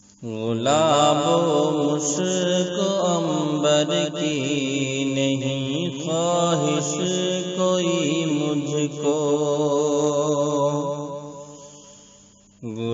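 Naat (Urdu devotional song) sung by a single voice: a long, ornamented sung passage of wavering, bending notes with no clear words, fading out over the last couple of seconds.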